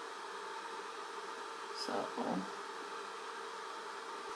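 Steady low hiss of room noise with a faint hum, broken by a single short spoken word about halfway through.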